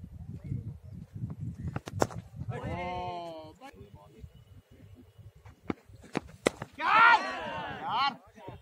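Cricket players shouting on the field: a drawn-out call about three seconds in, and loud high shouts near the end. A sharp knock comes about two seconds in, with a few more just before the final shouts.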